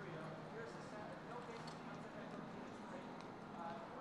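Hoofbeats of thoroughbred racehorses galloping on a dirt track, with indistinct voices in the background.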